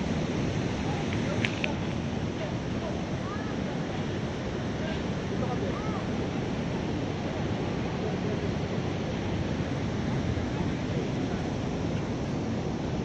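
Steady rushing noise of river water pouring over a low weir, mixed with wind buffeting the microphone. A brief click about one and a half seconds in.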